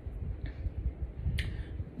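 A single sharp click about one and a half seconds in, with a fainter click earlier, over low rumbling handling noise from a handheld phone.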